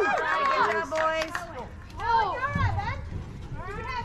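Young players and spectators cheering and whooping in many overlapping high yells, celebrating the out that ends the half-inning.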